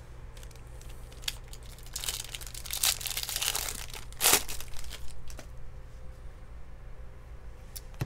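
A trading card pack's wrapper being torn open and crinkled by hand, in a stretch of rustling from about two seconds in that is loudest near the four-second mark. A few light clicks from cards being handled come before and after.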